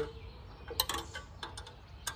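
Scattered metallic clicks and taps, several a second and unevenly spaced, from hand tools working on the engine of a Farmall A tractor as it is taken apart.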